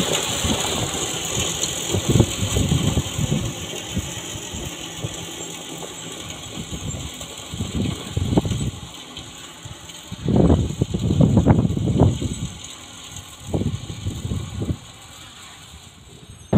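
Salt-spreading truck's engine running as it drives away, fading gradually. Several louder low rumbles come and go in the second half, the longest lasting about two seconds.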